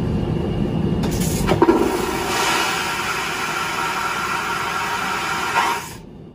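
Push-button toilet flushing: a low rush of water, joined about a second and a half in by a louder, higher hissing rush that dies away just before the end.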